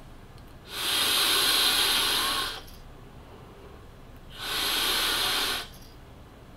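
A long drag of about two seconds pulled through a Horizon Tech Arctic Turbo sub-ohm vape tank firing at 90 watts, an airy hiss of air rushing through the tank. After a quiet gap of about two seconds comes a shorter hiss as the vapour is breathed out.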